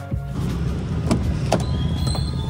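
Car moving on a town street, heard from inside the cabin: a steady low engine and road rumble that follows background music ending right at the start, with two light clicks in the second half.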